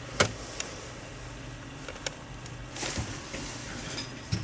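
Low steady hum of a desktop PC running as it boots, just switched on. A single sharp click comes just after the start, and a short rustling swell comes near three seconds in.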